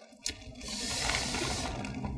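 Scallion oil sauce being ladled from a steel bowl onto balut eggs on a metal tray: a steady trickling, splattering liquid sound. A short click comes near the start.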